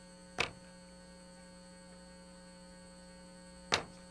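Faint, steady electrical mains hum in the audio line, a buzz of several fixed tones. Two short sharp sounds break it, one just after the start and one near the end.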